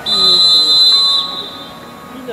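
Referee's whistle blown in one long, steady, high-pitched blast lasting a little over a second, signalling the end of the first half.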